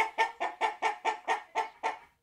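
A chicken clucking in a quick, even run of short calls, about four a second, which stops near the end.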